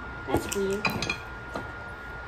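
Ceramic mugs clinking and knocking together as they are handled. There are a few sharp clinks in the first second, with a short vocal sound among them.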